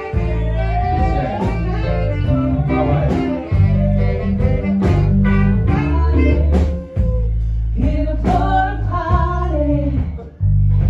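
A live band playing loud, with a heavy bass line, drums and a voice singing over it. The bass drops out briefly twice.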